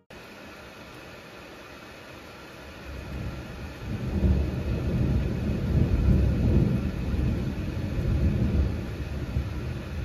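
Rolling thunder: a low rumble that builds about three seconds in and keeps swelling and receding, over a steady hiss of heavy rain.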